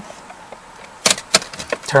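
Two sharp clicks about a third of a second apart from a Toyota Tacoma's ignition switch as the key is turned to on, with the odometer reset button held in to reset the oil maintenance reminder.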